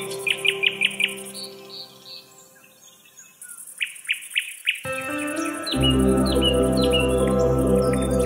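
Small songbirds chirping in quick series of short, downward-sliding notes, repeated throughout. Under them a music track fades out over the first few seconds, and a new piece starts about five seconds in, its bass coming in a moment later.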